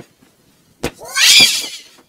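A click, then a short, high-pitched, distorted squeal lasting under a second that fades out. It is a voice clip pitched up and warped by digital effects until it sounds like a cat's yowl.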